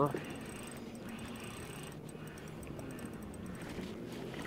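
Fishing reel being cranked in a steady retrieve, a low mechanical whirr with faint rapid ticking, as a small hooked bass is reeled toward the boat.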